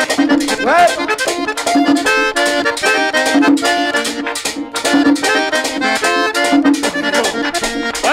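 Merengue típico music: an accordion playing quick runs of notes over a driving, steady percussion beat.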